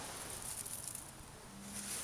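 Faint outdoor garden ambience with a thin, steady high-pitched insect drone. A brief low hum comes in near the end.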